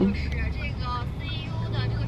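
Steady low rumble of a car in motion, heard from inside the cabin, with a voice playing faintly from a phone's speaker over it.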